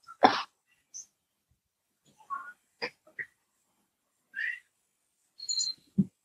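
A man's brief soft chuckles and breaths: a few short, separate sounds with silent gaps between them, the first and loudest just after the start.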